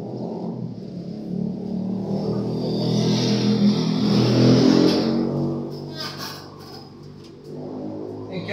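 A motor vehicle passing on the street: engine and tyre noise rising over a few seconds, loudest just after the middle, then fading away.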